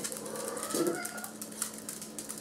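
Small dogs' claws clicking and skittering on a hardwood floor as they move about, with a faint high whine.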